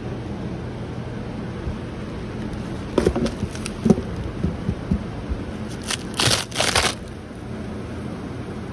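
A wooden beehive being opened: a few sharp knocks about three to five seconds in, then two longer bursts of scraping and crinkling around six to seven seconds as the cover comes off the hive box. A steady low hum runs underneath.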